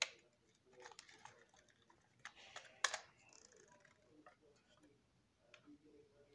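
Small plastic toy packaging and wrapping handled by hand: scattered light clicks and crinkles, with a sharper click about three seconds in.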